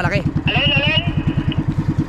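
Small motorized outrigger boat (bangka) engine running steadily underway, an even low putter of about a dozen beats a second.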